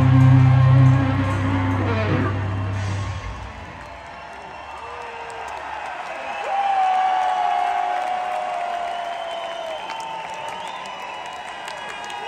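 A metal band's last chord ringing out through the concert PA, the bass dying away about three seconds in, followed by a large crowd cheering and whooping.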